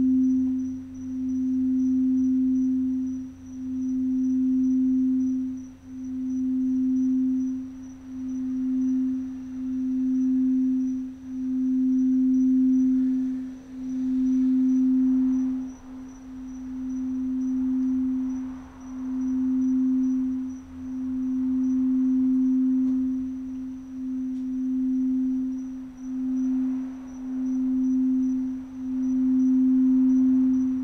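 Crystal singing bowl being rimmed with a mallet, holding one steady, pure tone that swells and dips every second or two as the mallet circles.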